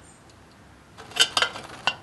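A few light metallic clicks and knocks as a steel square is set against the cut end of a steel pipe: a cluster a little past a second in, and one more near the end.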